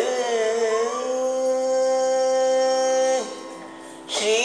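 Male Carnatic vocalist gliding into one long, steady held note, which breaks off about three seconds in. A quieter steady drone carries on underneath.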